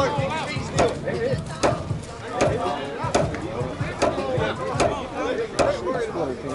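Sharp knocks repeating very evenly, a little under one second apart, with voices talking between them.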